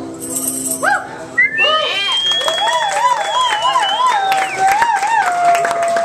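The last acoustic guitar chord of a song rings out and fades, with a short tambourine shake. Then the audience cheers with loud whoops and a long high whistle over clapping.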